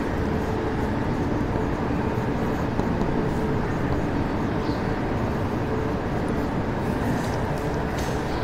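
Steady low background rumble with no clear rhythm or change.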